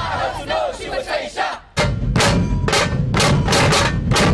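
Drummers of a dhol-tasha troupe shouting together in a loud group cry. About two seconds in it gives way abruptly to the massed dhols and tashas beating a fast, steady rhythm of about four to five strokes a second.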